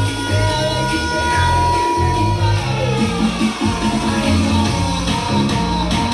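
Music with heavy bass notes and a melody, played loud through loudspeakers driven by a BOSA XS850 two-channel power amplifier.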